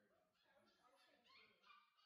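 Very faint, high-pitched whimpering and squeaky yips from a Bordoodle puppy, in short bursts that rise and fall in pitch.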